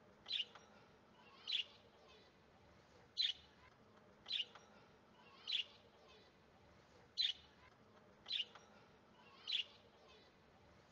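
A small bird chirping faintly, one short high chirp about every second and a quarter.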